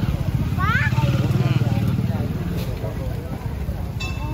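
Busy street noise: a steady low rumble of passing motorcycle engines, with people's voices calling out over it, one rising shout just under a second in.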